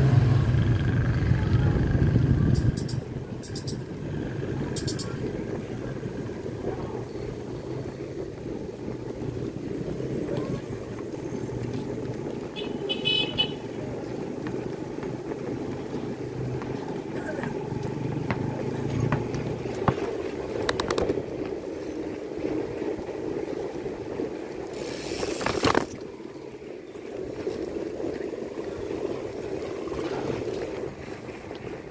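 Road noise heard from a moving bicycle: a steady rush of wind and tyres, with a motor vehicle's engine loud in the first few seconds. A brief, high-pitched, trilling ring comes about 13 seconds in, and a short loud rush of noise comes near the end.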